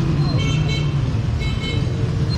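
Street traffic: a steady low engine rumble, with short high-pitched toots that come in small groups about once a second.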